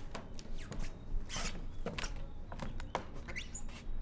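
Footsteps and light knocks on a wooden floor, with the rustle of a cloth coat being handled about a second and a half in, and a short rising squeak near the end.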